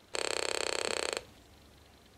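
Homebrew 555-timer audio oscillator buzzing through a small loudspeaker: a short, raspy buzz pulsing about twenty times a second, lasting about a second before cutting off.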